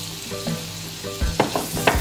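Diced tomato sizzling in hot melted butter in a non-stick frying pan while a silicone spatula stirs it, with a few sharp taps over the second half.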